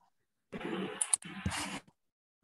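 A brief, unintelligible person's voice coming over a video-call connection, starting about half a second in and lasting about a second and a half.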